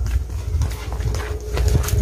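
Footsteps of people walking on a path, heard as irregular clicks over a loud low rumble of wind and handling on a handheld microphone.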